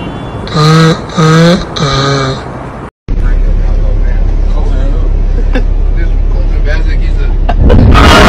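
Three loud drawn-out vocal sounds sliding in pitch, then, after a brief silence, the steady road and engine drone inside a moving car, with a strong constant low hum and a few faint clicks. A loud burst of sound comes near the end.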